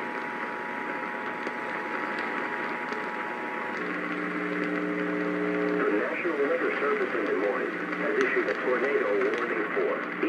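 Emergency Alert System broadcast heard over a weak, distant AM radio station, with hiss throughout. The steady two-tone attention signal ends about four seconds in, a low buzzing tone follows for about two seconds, and then a voice begins reading the warning message.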